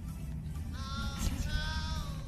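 A high-pitched, wavering squeal that starts a little under a second in and holds to the end, rising slightly in pitch, over faint background music.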